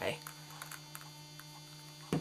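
Steady low electrical hum with a fainter overtone above it, with a few faint light ticks.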